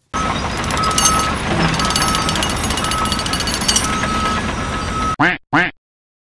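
A loud, dense rattling din with a high beep repeating about once a second cuts off suddenly after about five seconds. A duck then quacks twice.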